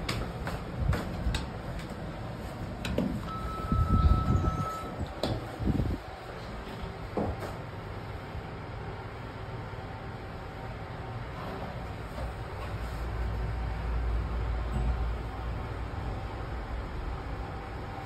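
Mitsubishi passenger lift: a few clicks, then a short steady beep about three seconds in as the doors slide shut. After that comes the car's low hum as it travels upward, swelling for a few seconds near the middle.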